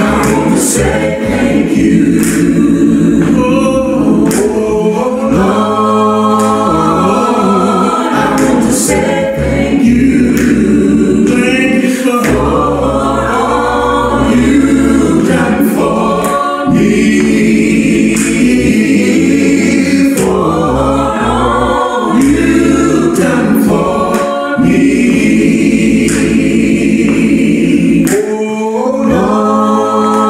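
Gospel choir singing in harmony, with several voice parts holding chords.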